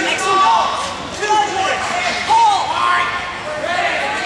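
Voices in a large, echoing gym hall: people talking and chattering around the sparring mats.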